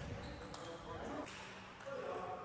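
Faint knocks of a table tennis ball against the bats and bouncing on the table during a rally.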